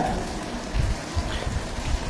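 A steady hiss of background noise with a low, uneven rumble underneath, and no speech.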